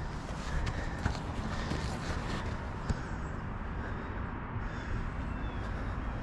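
Steady low rumble of wind on the microphone outdoors, with a few faint footsteps and light clicks on sandy rock.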